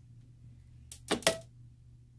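A quick cluster of three or four sharp wooden knocks about a second in, the last the loudest with a brief ring. This is a wire soap cutter's wooden arm being brought down through a loaf of cold-process soap and striking its base as a bar is cut off. A low steady hum runs underneath.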